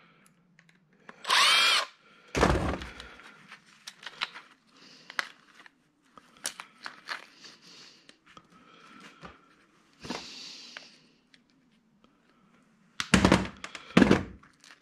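A cordless drill/driver runs in one short burst about a second and a half in, its whine rising and then falling as it spins up and winds down, backing out screws while a small motor and board are stripped for scrap. A heavy thunk follows, then light clinks and rattles of small metal parts being handled, and louder clattering knocks near the end.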